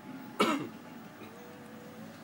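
A single short cough from a person, about half a second in.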